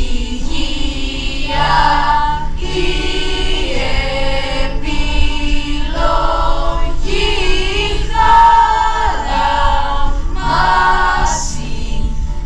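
Large choir of teenagers singing in phrases of held notes, each about one to two seconds long with short breaks between them.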